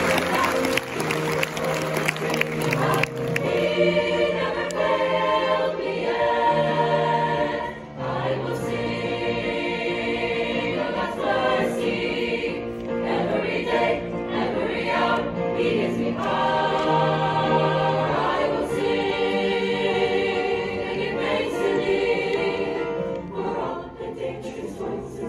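Mixed-voice high school choir singing in harmony, holding sustained chords over a low bass part.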